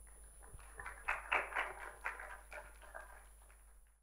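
Scattered clapping from a small audience, starting about half a second in, strongest around the one- to two-second mark, then thinning out.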